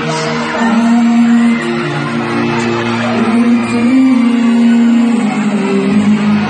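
Live band music played loud through a hall's sound system: a male singer holding long notes over guitar accompaniment.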